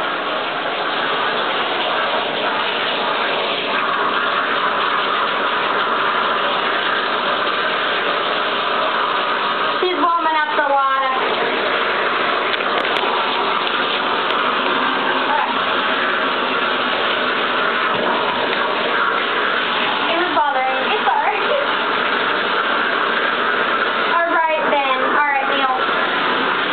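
Water running steadily from a bathtub tap, a loud even rush.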